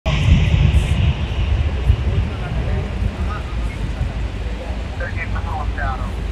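Low, steady rumble of vehicle traffic at a busy curb, with faint voices coming in over it in the second half.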